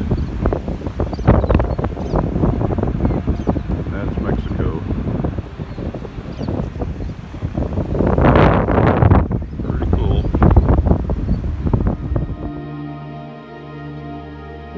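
Wind buffeting the microphone on an open beach, in gusts, strongest about eight and ten seconds in. It cuts off near the end, giving way to soft ambient background music.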